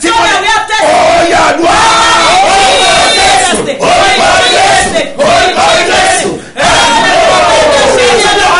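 A man and a woman praying aloud at the same time, loud and fervent, with three brief breaks for breath.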